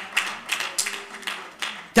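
Scattered, irregular hand claps from a few people in the congregation.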